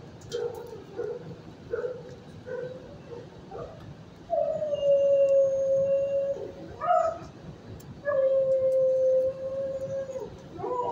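A dog whimpering in short whines, repeated about every ¾ second. About four seconds in, it breaks into a long howl of about two seconds, gives a short yip, then howls again for about two seconds.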